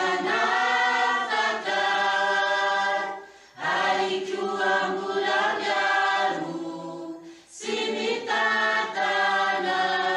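A choir singing a gospel hymn in three phrases of held notes, with short pauses for breath between them.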